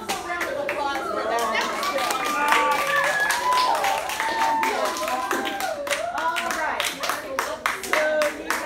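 Several students' voices overlapping, their pitch sliding up and down, mixed with irregular hand claps.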